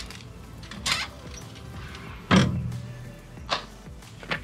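Folding metal RV entry steps being pushed shut by hand: a knock about a second in, a loud metal clank a little past halfway that rings briefly, and a sharper knock near the end as the steps seat in their stowed position.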